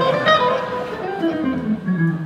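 Electric guitar playing a run of single plucked notes that falls in pitch.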